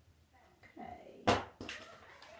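A paper word card pulled from under a round magnet on a whiteboard, giving one sharp clack a little over a second in.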